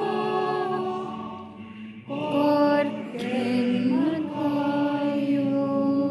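A group of people singing together in slow, held notes, with a short break between phrases about two seconds in.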